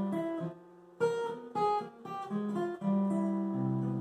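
Steel-string acoustic guitar played fingerstyle, a lick built on intervals: plucked notes, a short pause about half a second in, then a quick run of notes ending on a held two-note interval that rings out.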